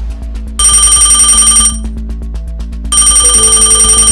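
Mobile phone ringtone ringing twice, each ring a bright, high electronic tone about a second long, over steady background music.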